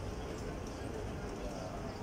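Outdoor café terrace ambience: a steady low rumble with indistinct voices and a few faint light clicks.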